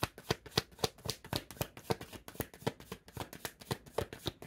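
A deck of tarot cards being shuffled by hand: a steady run of quick card slaps and riffles, about four a second.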